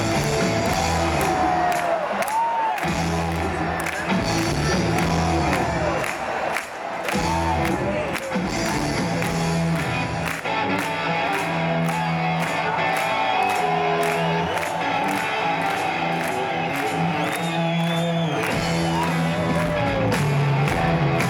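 Rock band playing live over a large PA, with electric guitars, bass and drums, recorded from the audience with crowd noise mixed in. A brief dip in loudness comes about six seconds in.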